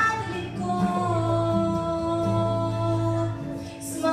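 Young woman singing a pop song into a handheld microphone, her voice amplified through loudspeakers; she holds one long note for about two seconds in the middle, and the sound dips briefly near the end.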